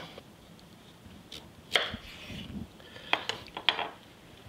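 A chef's knife slicing through a zucchini and knocking on a wooden cutting board. There are a few separate sharp knocks: the loudest comes nearly two seconds in, and a quick run of them comes near the end.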